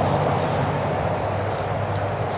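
Handheld pump-up sprayer spraying through its wand nozzle: a steady hiss that slowly gets quieter.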